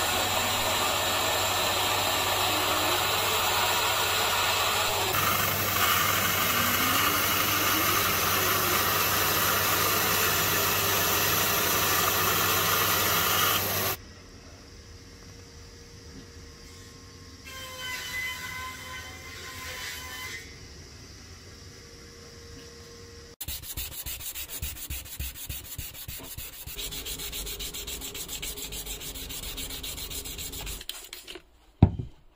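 A small band saw runs steadily, cutting through an epoxy-resin blank, and stops abruptly about halfway through. After a quiet stretch, a resin piece is hand-sanded on fine wet/dry sandpaper with quick back-and-forth rubbing strokes.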